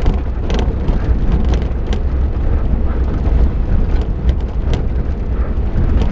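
Suzuki Jimny heard from inside the cabin while driving slowly over a rough gravel track: a steady low rumble of engine and tyres, with a few sharp ticks and knocks from the loose stones and bumps.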